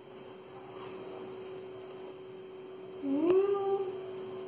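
A child's short closed-mouth "mmm" while tasting food, rising in pitch about three seconds in, over a steady faint hum.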